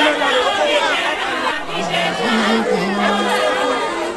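A crowd of many voices talking and chanting over one another, with one voice holding drawn-out, sung-like notes about halfway through.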